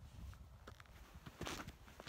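Faint footsteps crunching in snow, a few irregular steps, with the loudest crunches about a second and a half in.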